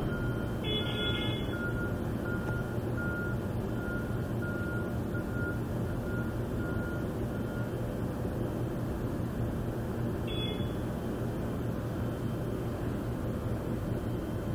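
Truck reversing alarm beeping steadily, a little under twice a second, over the low rumble of a truck engine; the beeping stops about halfway through and the rumble goes on. A brief high squeal sounds about a second in and again near ten seconds.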